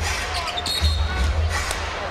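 Basketball being dribbled on a hardwood arena floor during live play, with a brief high squeak about two-thirds of a second in, over a low pulsing beat of arena music.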